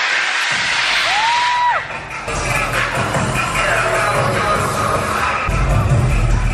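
Loud electronic dance music from a DJ set over a club sound system. The bass cuts out at the start while a pitched synth tone rises, holds and falls away, then the heavy bass comes back in near the end.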